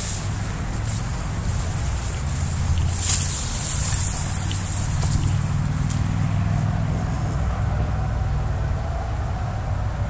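Steady low rumble of nearby road traffic, with a brief burst of rustling from brush and leaves about three seconds in.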